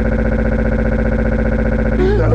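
A tiny fragment of the soundtrack looped very rapidly as a stutter edit, turning into a steady, buzzing, machine-like tone with a fast even pulse.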